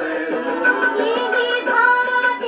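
A recorded song playing: a high voice sings a wavering, ornamented melody over instrumental accompaniment, with little treble.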